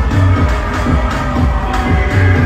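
Loud live concert music over an arena sound system, with a heavy repeating bass beat.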